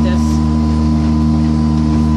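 Outboard motor pushing a small houseboat at a steady low speed: an even, unchanging drone.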